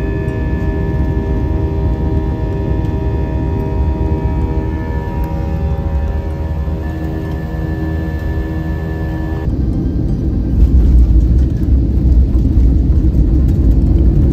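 Ambient background music with long held tones, cut off abruptly about nine seconds in. It gives way to a loud, deep rumble of a jet airliner rolling along the runway after touchdown, heard from inside the cabin.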